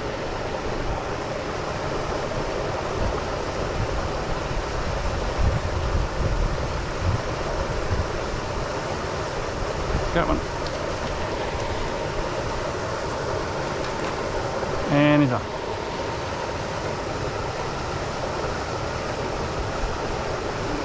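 Steady rushing of a small waterfall cascading into a rock plunge pool on a mountain brook. About three-quarters of the way through there is a short hummed vocal sound.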